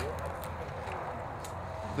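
A steady low hum with a few faint light taps, about three close together at the start and one more partway through.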